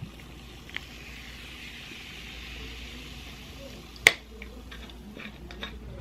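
Cola from a glass bottle is poured into a glass, then fizzes in the glass with a soft steady hiss for a few seconds. About four seconds in comes a single sharp click, the loudest sound, followed by a few faint ticks.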